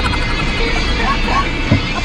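Several men laughing inside a fire engine's cab, over the steady low rumble of the vehicle.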